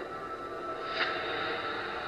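Eerie, spooky music playing from the small built-in speaker of a video mailer card, with a brief accent about a second in.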